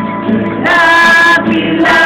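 Worship music: a group singing with band accompaniment, the voices holding a long loud note about halfway through.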